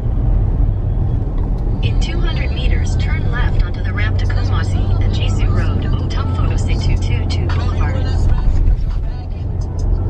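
Inside a moving car: a steady low drone of engine and road noise, with a voice over it from about two seconds in until near the end.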